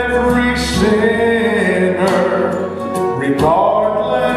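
Male baritone voice singing a southern gospel song live, holding long notes, over instrumental accompaniment.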